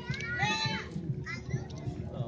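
Young girls' voices shouting and chanting in several short high-pitched bursts, over a busy mix of background noise.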